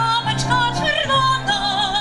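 A woman singing in a classical, operatic style, holding notes with a wide vibrato, over piano accompaniment on a digital piano.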